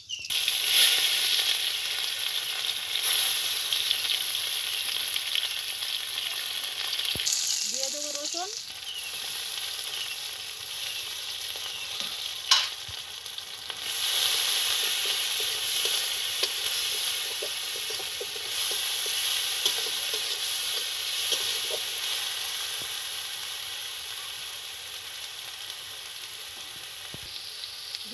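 Food sizzling in hot oil in an iron kadai, stirred and scraped with a spatula. The sizzle starts suddenly, surges again about halfway through, then slowly dies down.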